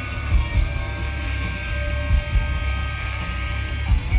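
Heavy metal band playing live, heard from the crowd: held, distorted electric guitar notes over a heavy low end, with a few deep hits about a second apart.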